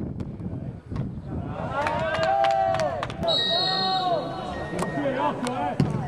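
Players and onlookers shouting during play at an outdoor football match: loud, drawn-out calls in the middle, other voices around them, and a few sharp knocks of the ball being kicked.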